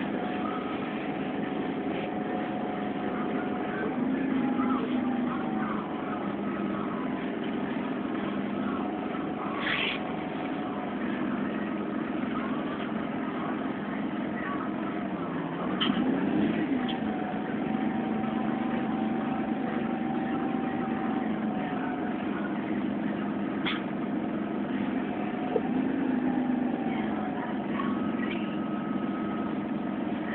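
A CNG city bus's engine heard from inside the cabin, running at low speed. Its hum rises and falls in pitch a few times as the bus creeps along, with a few faint clicks.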